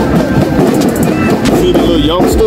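Marching band drumline playing a loud cadence on snare, tenor and bass drums.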